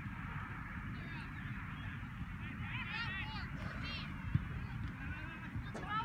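Geese honking in quick series: a run of calls about three seconds in, a shorter one about a second later and another near the end, over a steady low outdoor rumble.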